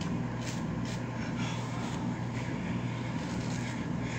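A steady low hum, with a few faint, brief strokes of a hairbrush being pulled through hair.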